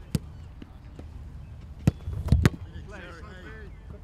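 Footballs being kicked: three sharp thuds, one right at the start and two more close together past the middle, the last the loudest.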